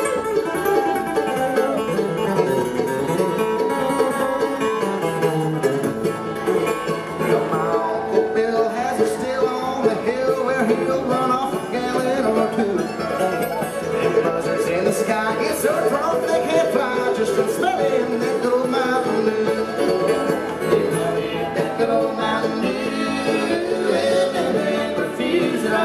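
Live acoustic bluegrass band playing an instrumental break: banjo, acoustic guitar, fiddle, mandolin and upright bass together at a steady tempo, with no singing.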